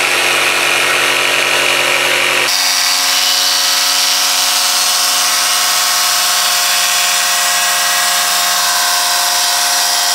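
RYOBI jigsaw with a dual-cut scroll blade running steadily, its motor whine mixed with the blade sawing through wood along a curved cut. The sound changes abruptly about two and a half seconds in, losing its lowest part.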